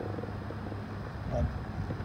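A steady low mechanical hum, like a motor running in the background, with one short spoken word about a second and a half in.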